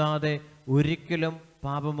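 A man's voice through a microphone, preaching in Malayalam in a drawn-out, chant-like delivery: short phrases with notes held at a steady pitch, separated by brief pauses.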